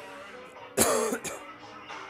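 Music from a DJ mix playing, with one loud cough about three-quarters of a second in, lasting about half a second.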